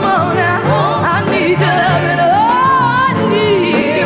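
A soul singer ad-libbing in a gospel style, her voice swooping up and down in long runs and arching into a held note about halfway through. A band plays behind her with a steady bass line.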